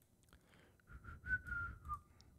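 A man whistling softly to himself, a thin, slightly wavering tune of a few notes that starts about a second in.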